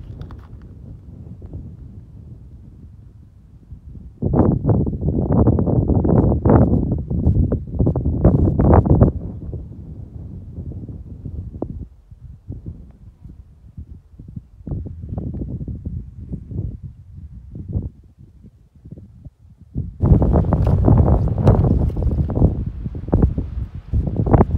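Wind buffeting the microphone in gusts, a loud low rumble from about four to ten seconds in and again near the end, quieter in between, with scattered knocks throughout.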